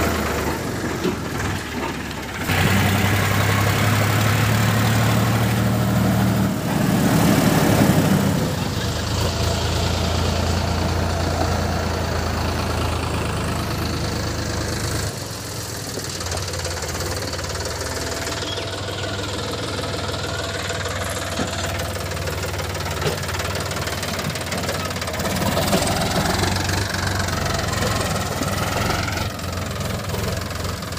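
Sonalika DI 50 RX tractor's diesel engine running steadily under load while pulling a loaded trolley. Its note steps up a few seconds in and drops a little about halfway through.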